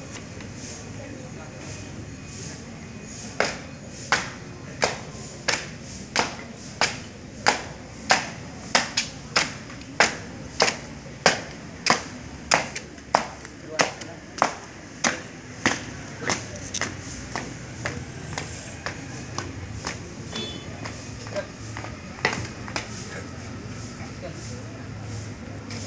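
Marching footsteps: shoes stamping hard on a concrete court in an even cadence of about three steps every two seconds. The steps are loud at first, then fainter, with one last stamp near the end as the marchers halt.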